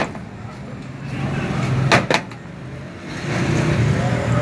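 Sharp clinks of a metal serving utensil against the rice tray and plates, two close together about two seconds in, over a steady low rumble of street traffic.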